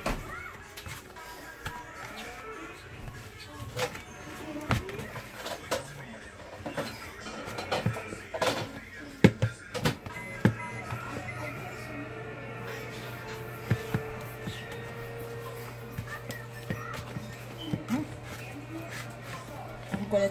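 Bread dough being kneaded by hand in a bowl: irregular soft thumps and knocks as the dough is pushed, folded and pressed against the bowl, over faint background music.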